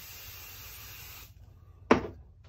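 Aerosol can of Odif 505 temporary adhesive spray hissing steadily, stopping about a second and a half in. A single sharp knock follows near the end.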